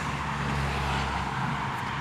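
Low, steady rumble of a motor vehicle's engine, like road traffic close by, with a faint hum that fades about a second in.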